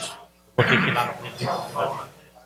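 Indistinct voice close to the microphones, cutting in abruptly about half a second in after a brief lull.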